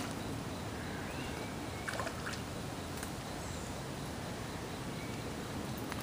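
Steady outdoor background noise by the water, with a few faint clicks about two and three seconds in.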